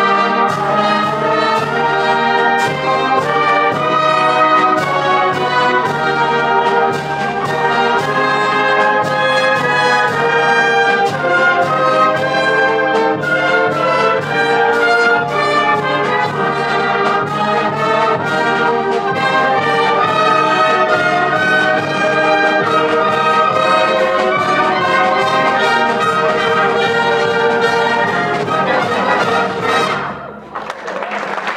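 Concert wind band playing a lively piece with a steady beat: clarinets, saxophones, trumpets, trombones and low brass together. The music stops abruptly near the end.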